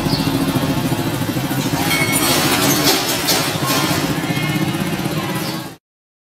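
A small motorcycle engine idling with a fast, even pulse, mixed with the tail end of a country-pop song. The sound cuts off suddenly near the end.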